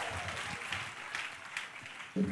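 A congregation applauding, the clapping fading away.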